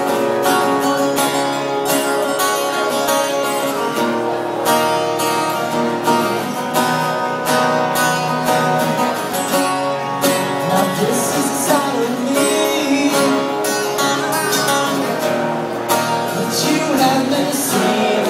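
Two acoustic guitars strummed together in a live duo performance, with singing coming in about halfway through.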